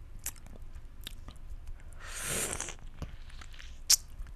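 Close-miked mouth sounds on a cut lemon half: a few small wet lip clicks, a slurp lasting under a second about halfway through, and a sharp wet smack just before the end as the lips press onto the lemon.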